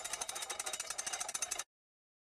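Tail of an intro sound effect: a dense crackle of rapid small clicks that stops abruptly about one and a half seconds in, then total silence.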